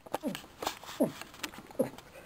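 Three short cries of pain ('ow!') in a person's voice, each falling steeply in pitch. Sharp clicks and taps come between them from plastic toy figures being handled on a wooden desk.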